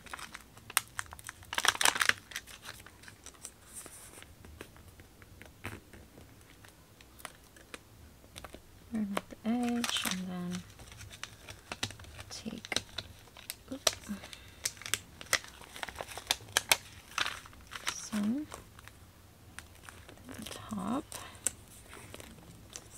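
A plastic backing sheet of adhesive Velcro dots crinkling as it is handled, with irregular crackles and clicks as dots are peeled off the backing; a few louder clusters of crackling come through.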